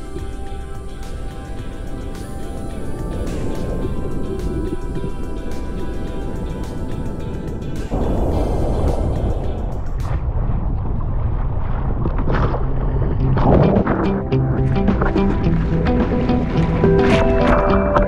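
Background music laid over the footage, its notes and chords changing a few times.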